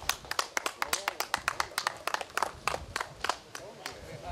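A small group of people clapping, sparse and uneven, dying away near the end.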